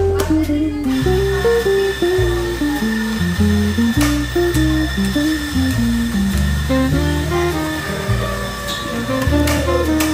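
Acoustic guitar background music, with an espresso grinder's motor running underneath as a steady high hum from about a second in until shortly before the end, grinding coffee into a portafilter.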